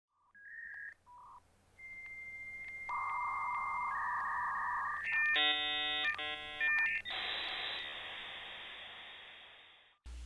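Dial-up modem connecting: a few short dialing beeps, a steady high answer tone, then chords of warbling handshake tones and a band of hiss that fades out near the end.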